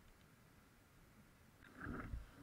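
Near silence: faint room tone between edited clips. Near the end it gives way to a brief muffled low rumble.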